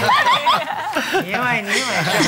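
Several people chuckling and laughing together, mixed with snatches of speech.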